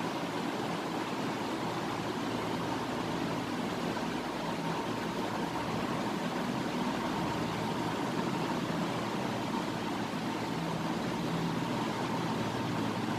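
Steady, even background noise with a faint steady hum, like a running fan or air conditioner.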